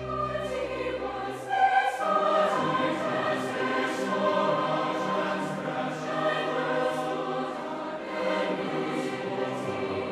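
Large mixed choir singing sustained chords, accompanied by a string orchestra with double bass. A very low held note sounds under the opening, stopping about a second and a half in.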